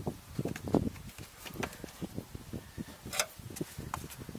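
Hands working the plastic air filter housing of a BMW E46 into place. Irregular knocks and clicks of plastic come as the lid and its clips are pressed and jiggled.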